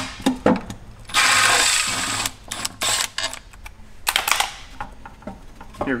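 Red cordless power tool with a socket spinning out the last oil pan bolts: one steady run of a little over a second about a second in, and a shorter burst about four seconds in, with light clicks and knocks of metal parts between.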